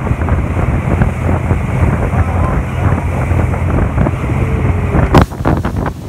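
Wind buffeting the microphone aboard a motorboat under way, over the low drone of the boat and the rush of its wake. About five seconds in, the sound changes abruptly to sharper, louder wind gusts.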